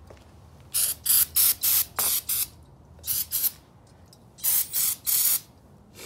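Aerosol can of Gumout carb and choke cleaner sprayed onto brake rotors in short hissing squirts, about nine in three quick clusters.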